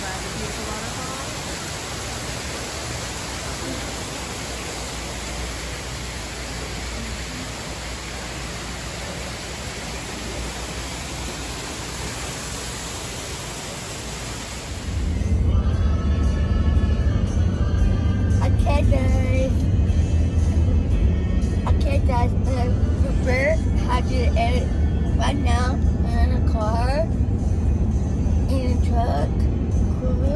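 Steady rushing of an indoor aquarium waterfall for about the first half. It cuts suddenly to the low road rumble of a moving car's cabin, with music and vocals playing over it.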